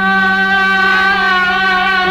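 Sundanese gamelan degung music: a single long note held through, wavering slightly, over a steady low tone.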